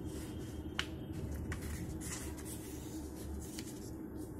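A sheet of paper being folded and creased by hand on a table: soft rustling and sliding, with one sharp tick about a second in.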